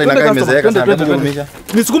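A man's voice shouting "eh, eh, eh" over and over in quick succession, an exclamation of protest.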